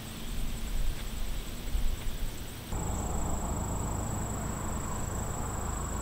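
Outdoor field ambience: insects chirring in a steady high-pitched tone over a low rumble. About three seconds in the background changes abruptly, and the insect tone becomes a smoother, continuous line.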